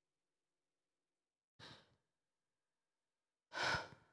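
A woman's breaths between spoken lines: a soft breath about one and a half seconds in, then a louder one near the end, with silence between.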